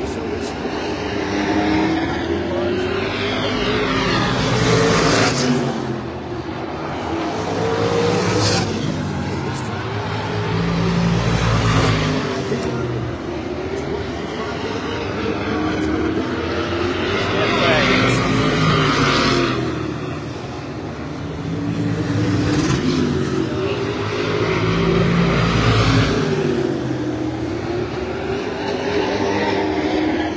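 Limited late model stock car engines running around the oval. Their pitch rises and falls, and the sound swells and fades several times as the cars pass.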